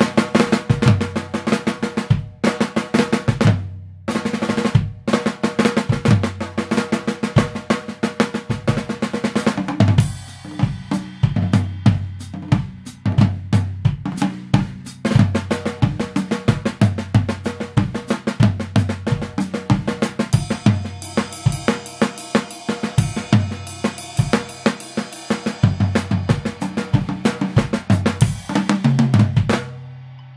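Acoustic drum kit played as a graded exercise on snare, floor tom, bass drum, ride and crash cymbals, with flams, drags and changing dynamics. A lighter, quieter passage comes about ten seconds in, cymbal wash builds in the later part, and the piece ends on a hit left ringing.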